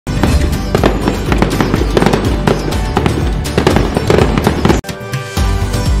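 Fireworks crackling and banging rapidly over music, stopping suddenly a little before five seconds in, after which the music goes on with steady held chords.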